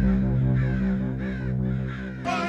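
A crow cawing over a sustained low synth drone that slowly fades: the sound of a production company's logo sting.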